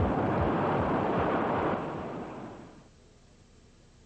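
Loud rushing noise of a car tyre losing its air rapidly in a blowout as the deflating tyre rolls on. It fades out between about two and three seconds in, leaving near silence.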